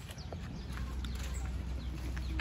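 Rural outdoor ambience: scattered short bird chirps and a few light clicks over a low steady rumble.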